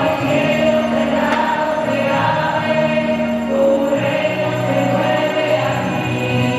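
Choir singing a sacred hymn in long, held notes, the harmony shifting to new notes about four seconds in.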